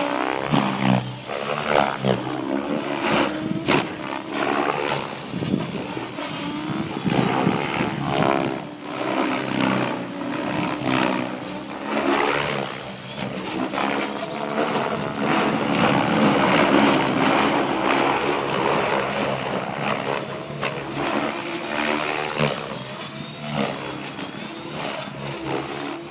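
Electric 700-size RC helicopter flying 3D aerobatics: its Scorpion HK-4525 brushless motor and 700 mm main rotor blades whine and whoosh, the pitch bending up and down and the loudness swelling and fading as it flips and rolls.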